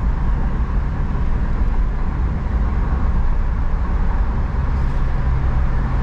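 Steady low rumble inside a moving car's cabin: tyre and road noise with engine hum as the car cruises along.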